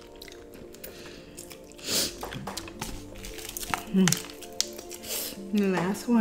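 Chewing and crunchy bites of a Hot Cheetos–crusted fried chicken drumstick over soft background music, with two crisp crunches about two and five seconds in. Short closed-mouth hums come about four seconds in and near the end.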